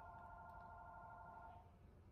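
A faint steady tone made of several pitches sounding together, held evenly and cutting off about one and a half seconds in.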